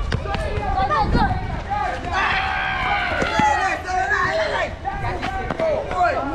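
Children's high voices shouting and calling out over one another, densest from about two seconds in until nearly five. A football's kicks and bounces on the hard court and running footsteps sound underneath.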